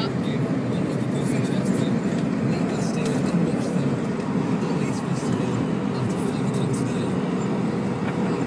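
Steady low drone of road and engine noise inside a moving car's cabin.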